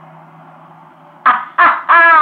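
Loud laughter breaking out a little over a second in, in three bursts, the last one long and falling in pitch, after a short pause with a faint steady hum.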